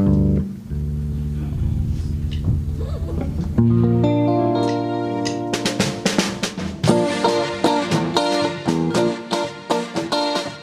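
Live church band starting the instrumental intro of a hymn: sustained low notes at first, fuller chords entering a few seconds in, then a steady beat of drums and strummed guitar joining about halfway through.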